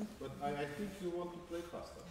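A man speaking quietly, words not made out.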